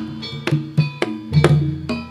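Live Javanese jaranan dance accompaniment: drum strokes and sharp percussion hits falling every quarter to half second over ringing pitched metal percussion notes and a deep sustained tone.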